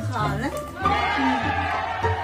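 Pembroke Welsh corgi whining: a short rising-and-falling whine, then one long wavering high whine from about a second in. It is the dog's sign of annoyance at being put into its crate.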